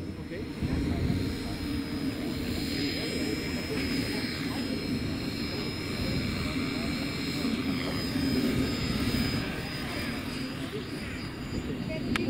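Align T-Rex 450 small electric model helicopter lifting off and flying: a steady rotor buzz with a thin, high motor whine above it.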